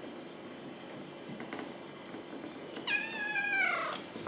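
Kitten meowing: one long meow near the end, sliding down in pitch as it goes.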